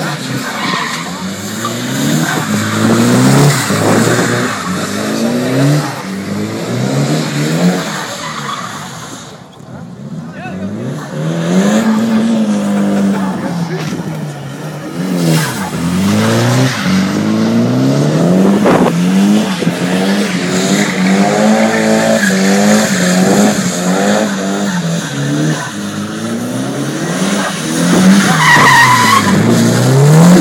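Nissan 180SX drifting, its engine revving up and down over and over as the throttle is worked, with a brief lift off the throttle about a third of the way in. A short high squeal, typical of tyres, comes near the end.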